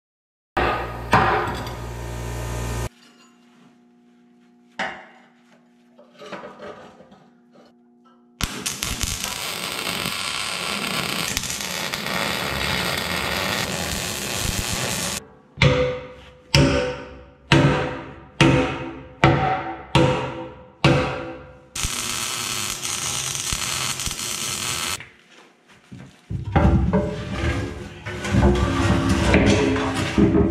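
Arc welding on a steel excavator bucket, an even crackling hiss in three stretches. Between them a sledgehammer strikes the bucket about ten times, roughly two-thirds of a second apart, each blow ringing briefly, with more hammering near the end.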